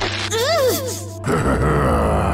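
A pained vocal cry that rises and falls in pitch, followed about a second in by a rough cough, over sustained background music.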